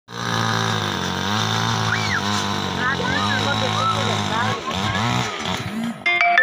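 An engine runs steadily, then revs up and down several times in quick swells near the end, with voices over it.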